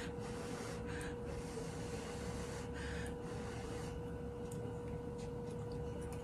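Two faint puffs of breath, about a second in and again near three seconds, blowing on a hot forkful of food to cool it, over a steady faint hum.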